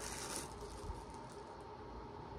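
Quiet room tone with a faint steady hum, and a brief soft rustle of a plastic doll being handled about a third of a second in.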